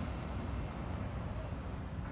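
Steady low rumble of a car, heard from inside its cabin as it drives slowly.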